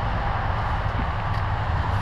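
Steady low rumbling noise with a hiss above it, and a faint click or two.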